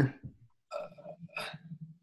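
Two short, faint vocal sounds from a person, about a second apart.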